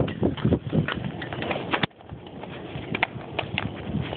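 A bonfire of wooden furniture crackling and popping in irregular sharp snaps, mixed with knocks and rustles as the camera is moved and set down. The sound drops off suddenly about two seconds in, then the scattered snaps go on more quietly.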